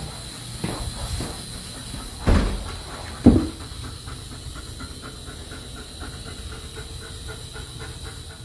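Hair dryer blowing with a steady hiss, aimed at a dog's face. Two thumps about a second apart, a little over two and three seconds in.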